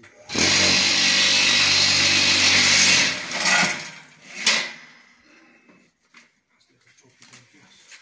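Electric vibrator motor of a mobile cinder-block machine running for about three seconds, shaking the concrete mix in the mould to compact it, then cutting off. Two short bursts follow as the mould is raised off the fresh blocks.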